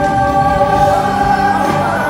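Live pop ballad duet: a male and a female singer holding long notes over backing music, amplified through a concert PA.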